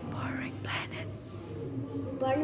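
A young child whispering a couple of words from behind a paper mask held against his mouth, over a low steady hum.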